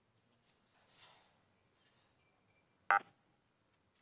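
Near silence broken by one sharp click just before three seconds in, with a fainter soft rustle about a second in.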